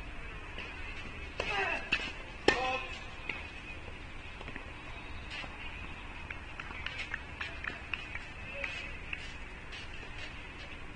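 Tennis court sounds: a short shout falling in pitch, then a single sharp hit, the loudest sound, with faint scattered ticks afterwards over a steady background hiss.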